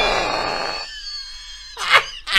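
A young man's drawn-out scream, loudest at the start and fading away over about a second, then a second short shout just before the end.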